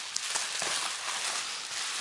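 Plastic bubble-wrap sleeve crinkling and rustling as hands handle it, with a few faint clicks in the first second.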